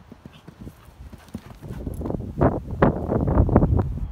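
A horse's hoofbeats: a run of quick strikes on the ground, faint at first and growing much louder from about a second and a half in.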